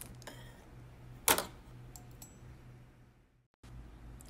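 A single sharp click about a second in, from the needle holder or suture scissors at the stitch on a dental model, over a low steady hum; the sound drops out briefly near the end.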